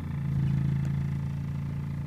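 Engine of a 1989 Nissan car idling steadily just after starting, heard from inside the cabin, with a fast idle showing on the tachometer.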